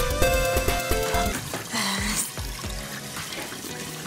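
Background music with a light beat, and about halfway through a brief rush of water splashing as an overflowing toilet spills onto the floor.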